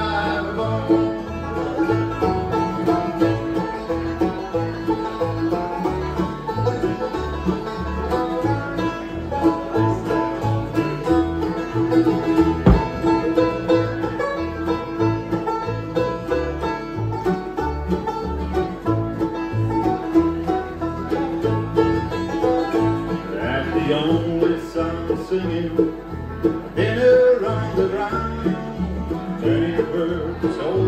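A bluegrass band playing live on banjo, mandolin, acoustic guitar and upright bass. A steady plucked bass line walks under quick picked notes, with the banjo out front mid-song.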